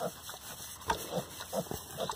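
Pigs grunting, a few short grunts.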